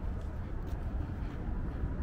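Steady low rumble with a faint hiss: outdoor background noise, with no clear single source.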